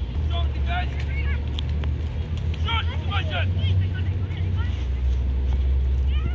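Children's voices calling out across a soccer field in short, high shouts, over a steady low rumble.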